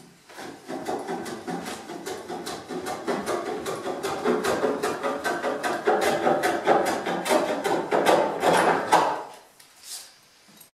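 Small hand plane shaving the edge of a curved timber boat frame in a quick run of short strokes, several a second. It takes fine shavings to fair the frame down to the marked line. The strokes start just after the beginning and stop about a second before the end.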